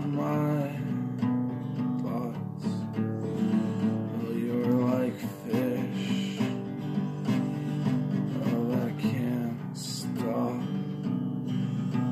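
Music: acoustic guitar strumming chords steadily, an instrumental passage of a song.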